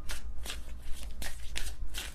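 A deck of tarot cards being shuffled by hand: an irregular run of quick card flicks and slaps, several a second.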